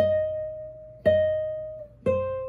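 Nylon-string classical guitar sounding a single note, D-sharp, twice, about a second apart. Each plucked note rings and fades. It is the raised note of the E minor scale being played.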